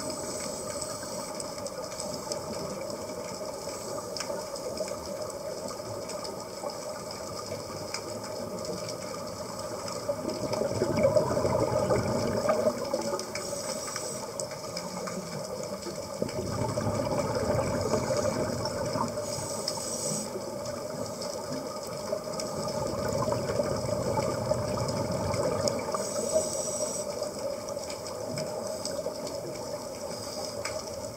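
Underwater sound recorded through a camera housing: a steady hiss with scuba regulator exhaust bubbles rumbling up in three long swells several seconds apart, each one a diver breathing out.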